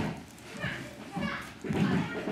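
Indistinct chatter of children's voices, quieter in the first second and busier near the end.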